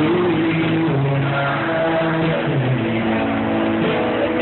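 A live rock band playing loud, heard through a phone's microphone: low held notes slide up near the start and step down about two and a half seconds in, with the rest of the band around them.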